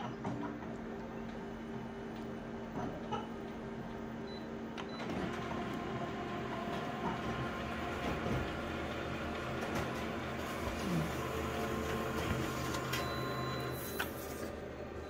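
Office colour multifunction copier running a full-colour copy job: a steady mechanical hum with held whirring tones that grows louder and busier about five seconds in as the print engine runs and feeds the sheet out, with a few light clicks.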